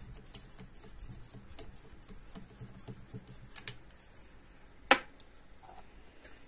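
Hands handling the tool rest of a small bead-turning lathe, making faint clicks and taps, with one sharp click about five seconds in. The lathe motor is not running.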